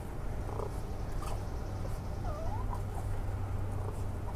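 Raccoon kits giving a few short, high chirps, with one wavering cry about halfway through, over a steady low hum.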